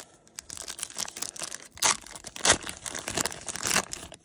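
Plastic wrapper of a 1992 Fleer football cello pack being torn open by hand, crinkling with several sharp rips, the loudest about halfway through.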